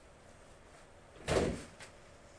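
A single thump a little over a second in, followed by a faint click.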